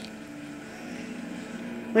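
A steady low hum of background noise, with no distinct events.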